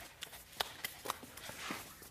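Light, irregular taps and shuffles of hands and knees on a studio floor as a person crawls on all fours.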